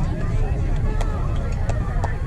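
Distant voices of young ballplayers and onlookers chattering and calling over a steady low rumble, with two short sharp clicks, one about a second in and one near the end.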